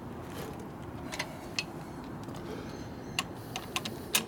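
The 1961 Harley-Davidson XLCH Sportster's ironhead V-twin running steadily at idle, with a few light metallic clicks as the clutch lever is handled.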